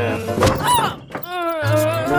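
Cartoon background music with a thud sound effect for a fall about half a second in, followed by a wavering tone.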